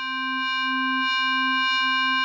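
Korg Kronos MOD-7 FM synth patch holding a single note: a steady low tone with a row of thin, steady high overtones above it, slowly swelling in. The low tone wavers slightly in level, its FM amount modulated by a tempo-synced random LFO.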